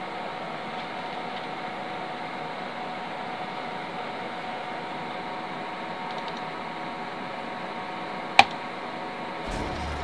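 Steady room noise, an even hiss with a faint steady hum, broken once by a single sharp click about eight seconds in.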